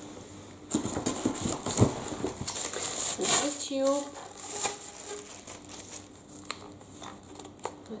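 Plastic wrapping crinkling and rustling as a plastic-wrapped vacuum cleaner tube is lifted from its cardboard box and handled. It is densest in the first few seconds and thins to scattered light rustles and taps.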